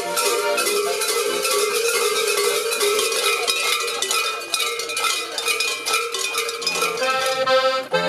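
Accordion playing a folk tune while bells jangle and clang continuously on top of it. The bells are loudest through the middle, and the accordion's chords come back clearly near the end.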